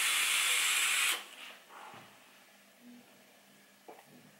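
A DJV RDTA rebuildable atomizer on a HotCig G217 box mod, fired at 70 watts while being drawn on: a steady hiss of air pulled through the atomizer over the heated coil, which stops about a second in.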